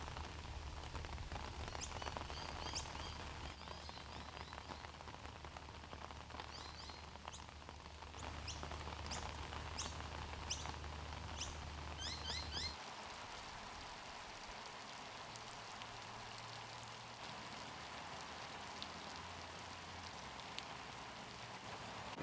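Steady rain falling, with birds chirping briefly a few times in the first half. A faint low hum underneath cuts off suddenly a little past halfway.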